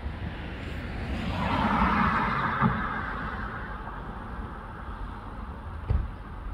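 A car driving past on the street: its tyre and engine noise swells to a peak about two seconds in and then fades away, over a steady low rumble. A short knock comes near the end.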